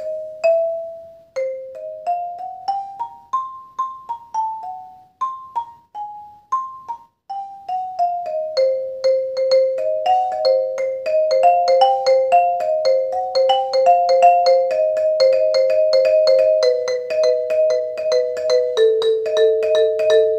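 Xylophone struck with yarn mallets: a slow tune of single ringing notes rising and falling, then from about eight seconds in a fast, even stream of notes alternating between neighbouring bars.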